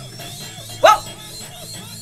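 Soundtrack of an animated TV episode: quiet background music, with one short, loud sound a little under a second in that rises sharply in pitch.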